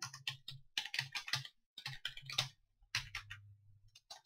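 Typing on a computer keyboard: irregular keystrokes in short runs with brief pauses between them.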